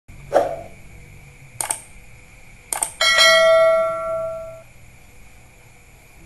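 Subscribe-button animation sound effect: a brief whoosh, then two sharp mouse clicks, then a bright notification-bell ding about halfway through that rings on and fades over about a second and a half.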